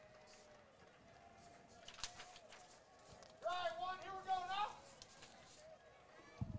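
Faint open-air ballpark ambience with a distant voice calling out for about a second midway through.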